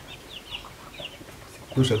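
A few faint, short bird calls in a lull, most of them in the first second. A man's voice starts again near the end.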